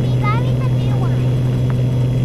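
Steady low drone of a Piper Saratoga's single six-cylinder engine and propeller in flight, heard through the headset intercom. A young girl's voice comes faintly over it.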